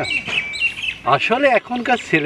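Birds chirping in the first second, followed by a person's voice.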